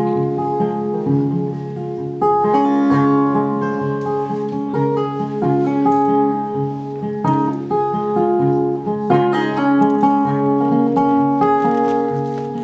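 Solo acoustic guitar playing the instrumental introduction to a song, with overlapping notes ringing on and no singing yet.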